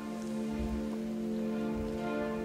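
A symphony orchestra comes in on a sustained held chord, steady and even throughout.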